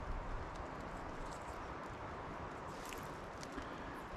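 Quiet, steady outdoor background noise: an even hiss with a faint low rumble and no distinct event.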